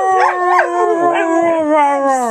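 A dog howling: one long, drawn-out howl that slowly falls in pitch.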